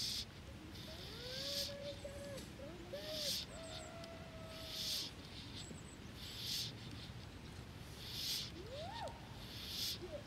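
Faint outdoor ambience with a few distant gliding animal calls, one of them rising near the end, and soft regular hissing swishes about every second and a half.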